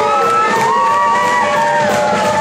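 Swing band music playing, with several people in the crowd whooping and cheering in long, overlapping held calls.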